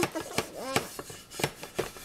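Five or so short, sharp knocks, irregularly spaced, of a panini maker's griddle plate bumping on a plastic high-chair tray as it is wiped with a towel.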